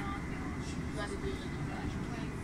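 Steady low rumble of a moving vehicle heard from inside, with faint, indistinct voices over it.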